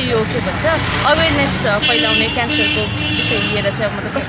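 A woman talking, with steady street traffic noise behind her voice.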